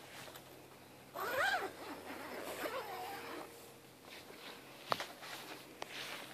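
Zipper on the canvas side gusset of an Oztent Jet Tent Bunker being run, a quick zip that rises and falls in pitch about a second in, with fainter zipping after it, then two sharp clicks near the end.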